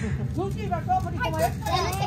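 Several children's voices chattering and calling out, high-pitched, over a steady low hum.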